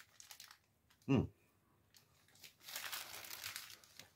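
Paper or plastic wrapper around a steamed meat bun crinkling as it is handled, a crackling stretch of about a second past the halfway point.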